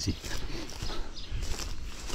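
Footsteps swishing and crunching through tall dry grass and brush, with the stems rustling against the walker, in an uneven walking rhythm.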